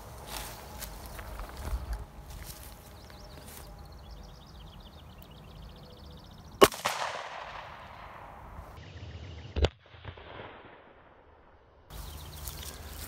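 A single shot from a Smith & Wesson 642 snub-nose revolver firing a .38 Special +P hollow point: one sharp crack about halfway through, followed by a fading echo. A second, much quieter thump comes about three seconds later.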